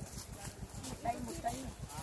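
Indistinct voices talking, over a continual low rumble of short thumps.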